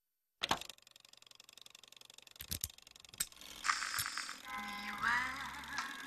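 Horn gramophone starting up: a click as the record goes on, then faint surface crackle with a few scattered clicks, and about four seconds in music begins playing from the record and grows louder.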